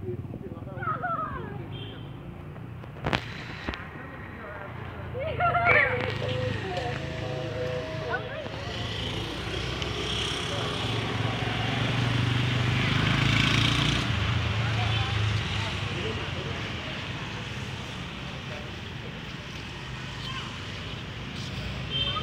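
Voices of people talking in the background, briefly near the start and again about five seconds in, with a single sharp click about three seconds in, over a broad background noise that swells around the middle and then fades.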